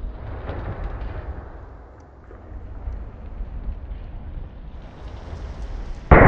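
Steady low rumble of a large fuel fireball burning, from a film-effects mortar pot loaded with a kerosene, petrol and diesel mix, with faint crackles throughout. It dips briefly about two seconds in.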